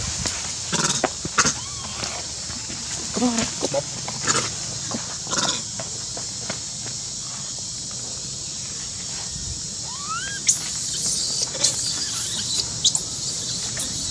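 Forest ambience: a steady high-pitched insect buzz with scattered short animal squeaks and rising chirps, and a flurry of sharper high calls about two-thirds of the way in.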